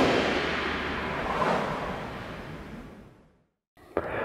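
A breathy whoosh sound effect for a logo intro, fading away over about three seconds with a slight swell halfway through. It is followed by a short silence and a sharp click just before the end.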